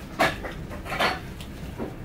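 Dishes and cutlery clinking and knocking at a meal on the floor: three short clatters, the first the loudest.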